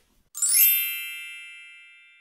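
A bright chime: a quick upward sparkle, then a high, many-toned ringing that fades away over about a second and a half.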